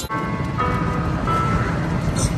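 Wind and road rumble from riding in an open golf cart, with a few held high notes stepping up in pitch over it during the first second and a half.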